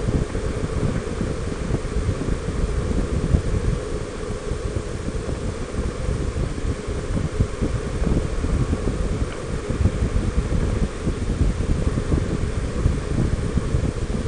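Wind buffeting the microphone of a camera on a Honda Gold Wing 1800 motorcycle cruising at highway speed, with motorcycle and road noise underneath. The rumble is loud and steady.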